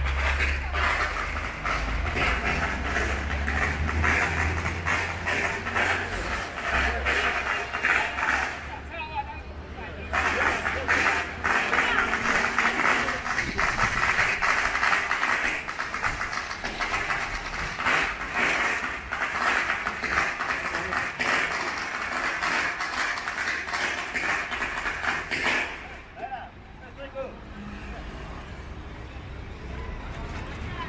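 Street procession noise: a crowd's voices with dense, rapid crackling, likely a string of firecrackers going off. There is a low vehicle engine rumble in the first several seconds. The crackling breaks off briefly after about nine seconds and stops a few seconds before the end.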